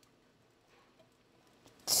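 Near silence: room tone, with a voice starting right at the end.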